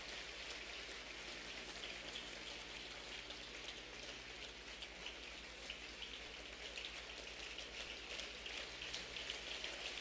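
Faint applause from a large standing audience, a steady patter of many hands clapping, over a low steady hum.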